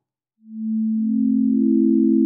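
Three pure sine tones entering one after another and then held together: A at 220 Hz, then C a just minor third (6/5) above it, then E a just fifth (3/2) above the A. Together they build a just-intonation A minor triad.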